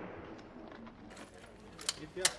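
The fading echo of a pistol shot dying away, then quiet with a few faint metallic clicks near the end.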